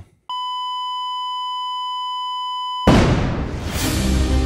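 A steady electronic beep tone held for about two and a half seconds, cut off by a sudden loud burst of noise that opens the intro music.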